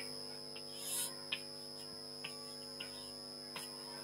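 Steady electrical mains hum with a few faint, separate taps of chalk on a blackboard as an interval is drawn.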